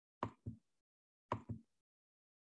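Pairs of short dull thumps, two about a quarter of a second apart, repeating about once a second, with dead silence between them.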